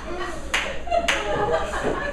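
Two sharp hand claps about half a second apart, over a murmur of voices in a theatre.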